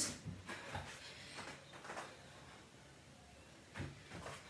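Faint, scattered soft knocks and rustles of hands and feet moving on a foam exercise mat during plank walkouts, with a slightly louder thud near the end.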